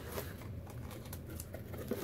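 Faint rustling with a few light scrapes and ticks: a cardboard mailing box and the paper and items inside it being handled.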